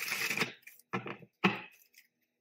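A tarot deck being shuffled by hand, the cards riffling in three short bursts.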